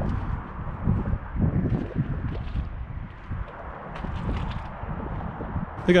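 Footsteps on asphalt, about two a second, under wind rumbling on the microphone.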